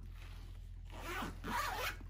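The large zipper along the top of a mesh beach tote being pulled in one stroke, a rasp of about a second that starts about a second in.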